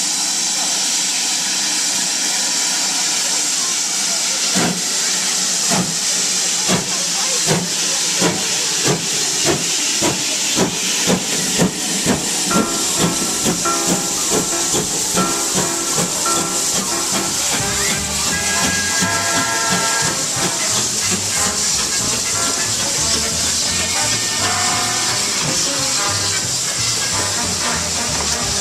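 GWR 5600 class 0-6-2T steam locomotive No. 5619 starting away with a train: a loud, steady hiss of steam, with exhaust chuffs that begin about four seconds in and come quicker as it gathers speed.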